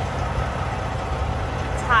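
Truck engine idling: a steady low rumble.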